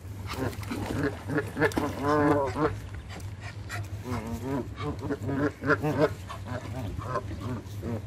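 Canada geese calling while they feed: several low, drawn-out calls of about half a second each, the loudest about two seconds in, with short clicks between them.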